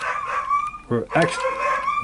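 A high, drawn-out, slightly wavering cry with a short break about a second in.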